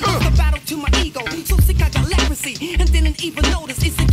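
Hip hop music: a rapped vocal over a beat with a heavy, repeating bass line.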